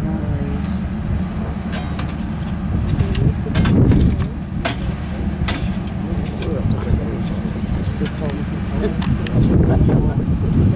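Wind buffeting the microphone in a low, steady rumble, with people talking in the background and a few light clicks, most around three to six seconds in.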